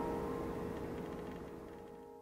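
A held piano chord slowly fading away during an instrumental pause in a ballad accompaniment.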